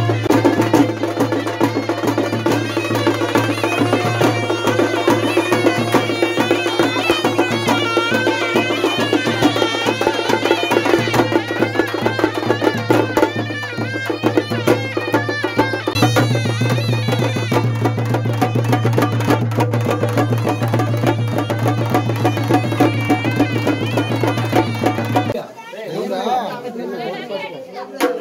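Village street band playing traditional folk music: a brass horn carries a wavering melody over busy drumming and a steady low drone. The music cuts off near the end, giving way to voices chattering.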